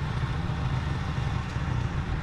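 Gasoline engine of a Woodland Mills HM130MAX bandsaw sawmill running steadily, a low even rumble with no cut under way.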